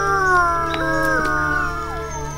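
Grey wolves howling together: several long, overlapping howls that glide slowly in pitch, one dipping near the end.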